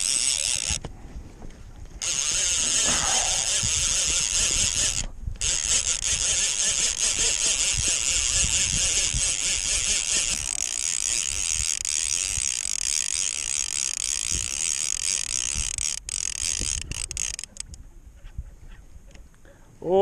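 Fishing reel cranked steadily to bring in a hooked lake trout on lead core line, its gears whirring, with two short pauses in the first few seconds; the cranking stops a few seconds before the end.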